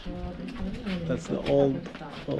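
Low cooing calls of a dove or pigeon, heard twice, the louder one around a second and a half in, mixed with people's voices.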